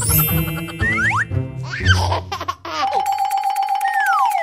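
Upbeat children's background music laid with cartoon sound effects: quick whistle-like slides up and down and bell-like dings. The bass drops out about two and a half seconds in, leaving a single held tone with falling slides over it.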